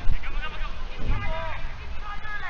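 Men's voices shouting calls across a football pitch during play, with one loud drawn-out call in the middle.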